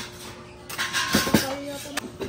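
Background chatter of people's voices, with one short sharp knock about halfway through.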